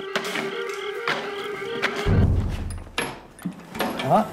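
Heavy metal lid of a steam-distillation vat closing with a low thud about two seconds in, followed by a few sharp metallic clicks, over background music.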